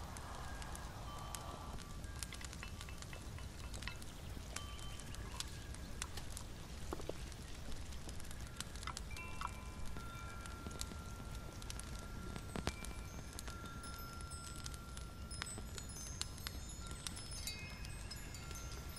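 Faint tinkling chime tones over a low steady rumble, with scattered small clicks. One tone is held for several seconds in the middle, and short high tinkles come thick near the end.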